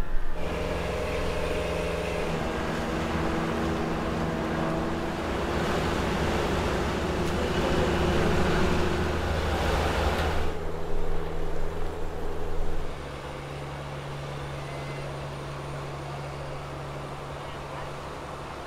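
Fishing boat engine running with a steady hum, under a rushing noise that grows louder midway and cuts off abruptly about ten seconds in; after about thirteen seconds the engine hum goes on more quietly.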